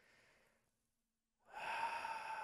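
A faint, short breathy exhale, like a weary sigh or stifled laugh, in the first half second. Then silence, until a much louder sound with several steady tones starts about a second and a half in.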